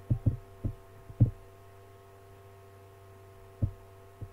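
Steady low electrical hum with a handful of dull thumps: a cluster in the first second and another near the end, the loudest about a second in.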